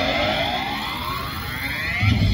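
Minibus engine accelerating as it drives past, a rising whine that climbs steadily in pitch.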